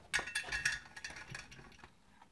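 Light metallic clicks and clinks as the spring-loaded pressure release valve is handled and fitted back into the boiler filler of a Mamod model steam engine, thickest in the first second and then thinning out.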